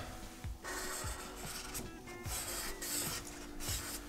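Marker pen scratching across cardboard as a template corner is traced, in two long strokes.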